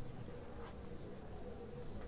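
Faint, steady buzzing of an insect, wavering slightly in pitch, with a brief high chirp about two-thirds of a second in.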